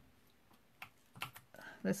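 A few short, sharp clicks and crackles of adhesive tape being laid and pressed onto paper cardstock, about a second in.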